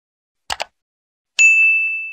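Sound effects from a subscribe-button animation: a quick double mouse click about half a second in, then a bright bell-like ding about a second and a half in that rings on and fades.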